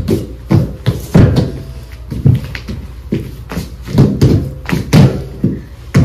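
Bare hands and feet thumping and slapping on a studio dance floor during floor dance moves, an irregular series of about a dozen loud thuds, two or three a second.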